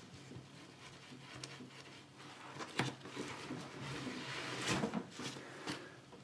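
Faint rustling and rubbing as a twin-lens film camera is lowered into a padded fabric bag compartment, with a soft knock about three seconds in and another near five seconds.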